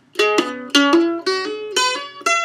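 Mandolin playing a quick scale, alternating picked notes with hammered-on notes: each pick strike is followed by a fingertip hammered onto the string, which sounds the next note without a new pluck.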